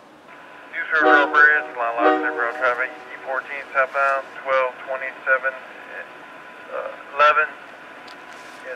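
Voice traffic over a railroad radio scanner: a voice speaking in short phrases, thin and narrow-sounding as through a radio speaker, over a steady hiss, starting about a second in.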